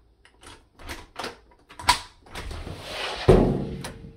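An exterior house door being unlocked and opened: several clicks of the deadbolt and knob, then the door pulled open with a rush of noise and a heavy thump a little past three seconds in.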